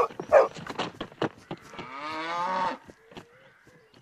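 A cow mooing: one long call of a little over a second about halfway through, its pitch bending upward as it goes. Before it come two short, sharp sounds.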